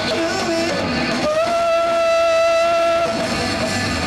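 Punk rock band playing live, with distorted electric guitars and drums; a single note is held for about two seconds in the middle.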